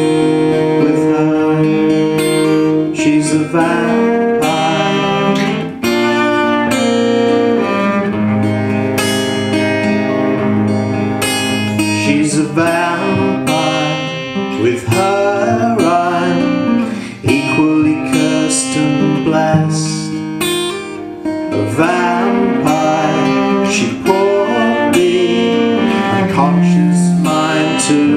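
Instrumental passage of a folk-pop song: an acoustic guitar played steadily over a bowed cello holding long notes.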